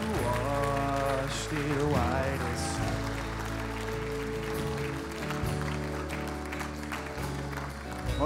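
Live worship band playing softly: sustained keyboard chords with a sung melody line in the first few seconds, and light applause from the congregation.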